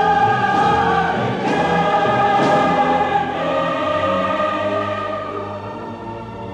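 Choir singing sustained chords with orchestra, loudest in the first half and growing softer after about three seconds.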